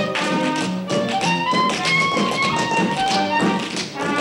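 Live pit orchestra playing an up-tempo show tune with strings and brass, with a steady patter of dancers' shoes tapping on the stage floor. Heard from far back in the theatre, through a single balcony microphone with no mics on the performers.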